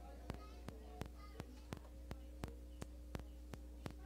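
A sound system's low steady hum with a faint, even ticking about three times a second. Faint voices can be heard under it.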